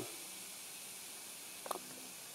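Faint steady hiss of background noise, with one brief soft pitched blip about three-quarters of the way through.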